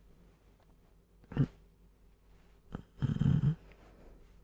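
A man's sleepy, wordless vocal sounds: a short low one about a second and a half in, then a longer, louder rattling one like a snore near the end.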